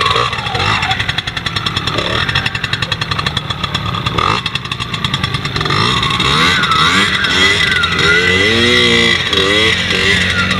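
Small trials motorcycle engine running throughout, with rapid even firing pulses at low revs in the first half. In the second half it revs up and down as the bike climbs a dirt bank, the pitch rising and falling with the throttle.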